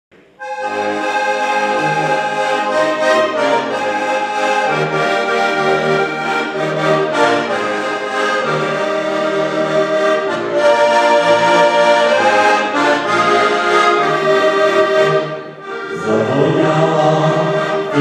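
Two heligonkas, diatonic button accordions, playing a traditional folk tune together, with a short break about fifteen seconds in before the playing picks up again.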